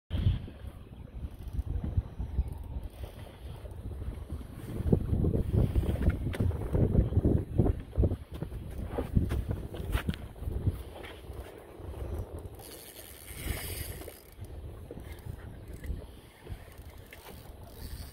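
Wind buffeting the microphone on an open boat, an uneven low rumble over choppy water, while an angler fights a fish on a bent rod. A few sharp clicks from the tackle are heard, and a short hiss comes a little past two-thirds of the way through.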